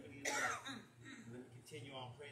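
A man clearing his throat once, sharply, about a quarter second in, followed by faint voice sounds, over a steady low hum.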